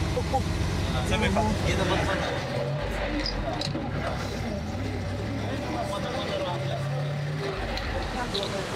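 Truck engine running while driving, heard from inside the cab: a steady low engine note with a couple of brief shifts in pitch.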